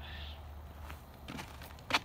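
A few soft footsteps and one sharper click just before the end, over a low steady hum.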